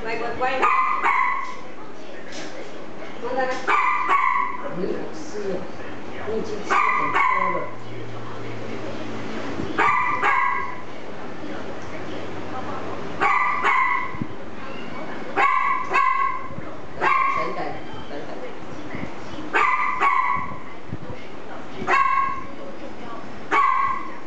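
A dog barking over and over, about ten short barks spaced two to three seconds apart.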